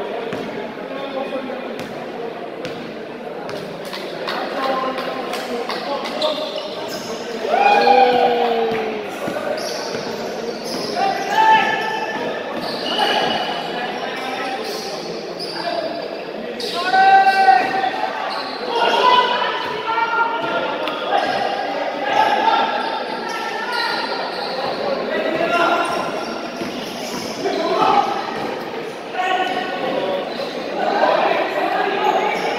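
Basketball game in a large gym: a basketball bouncing on the court amid sharp knocks, with shouts from players and onlookers echoing through the hall; the loudest calls come about 8 and 17 seconds in.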